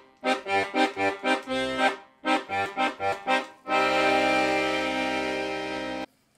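Bass buttons of an Italo-American 120-bass piano accordion, played on its single bass setting, which has no register switches: a run of short, detached bass notes and chords, then one long chord held for over two seconds and stopped sharply.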